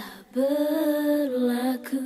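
A woman's recorded vocal played back on its own without the band, holding one long sung note that steps slightly down in pitch, with delay echo on it. The delay is a bit too much. A short click comes near the end.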